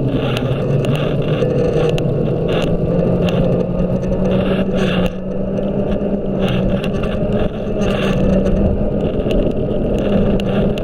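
Scooter riding along a paved road: a steady motor hum that rises a little in pitch over the first few seconds and then holds, over a continuous rumble from the wheels on the road surface, with scattered knocks from bumps.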